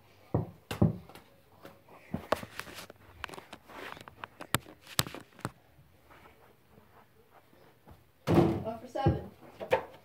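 A soccer ball being shot at a plastic toy basketball hoop: a run of sharp thumps and knocks as the ball strikes the backboard and rim and drops to the carpeted floor, two strong thumps about half a second and a second in, more through the middle. A short stretch of voice comes near the end.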